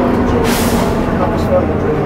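Leyland Titan double-decker bus running, heard inside the lower deck as a steady engine rumble and hum, with a short hiss of air from the air brakes about half a second in.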